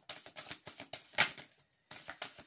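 Tarot cards being handled on a table: a run of light ticks and rustles, with one louder sharp snap about a second in.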